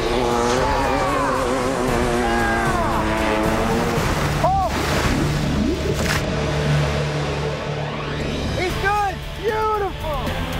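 Dirt bike engine running hard as the bike skims across the water, its pitch wavering for the first few seconds before it settles into a steady drone. Excited shouts rise and fall about four seconds in and again near the end.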